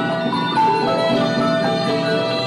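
Instrumental Cambodian pinpeat ensemble music: struck mallet-instrument notes over a long held tone.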